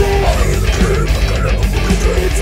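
Full-band metal music with a funk feel: drums, distorted guitar and electric bass. A held melody note breaks off at the start and a busier, moving line takes over.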